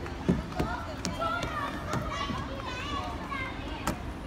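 High-pitched babble and chatter from young children. A few sharp knocks from hands and shoes on a plastic slide come through it, the loudest a fraction of a second in.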